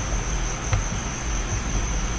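A steady high-pitched background trill or whine over a low hum, with a faint click about three quarters of a second in.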